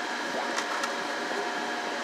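Steady whir of small machinery with a faint continuous whine, unchanging throughout.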